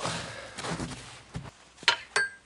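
A fading rustle, then a single sharp knock near the end, from hydraulic hoses and their fittings being handled at a tractor's snowplow hitch.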